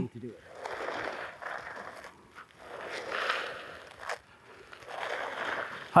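Clothing and gear scraping and rustling over dry, sandy dirt as a man belly-crawls on his elbows: three long dragging strokes, each about a second and a half.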